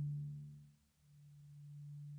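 The last low note of a renaissance lute ringing out. Its upper overtones die away within half a second, leaving a single low tone that fades almost to nothing about a second in and then swells back, a slow beating.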